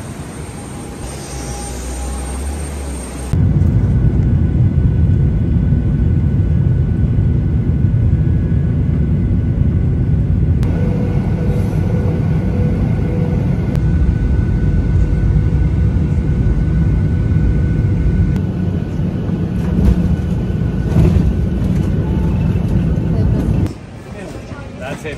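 Airliner cabin noise in flight: a loud, steady low drone of the jet engines and air flow, starting about three seconds in after a quieter stretch and cutting off suddenly just before the end.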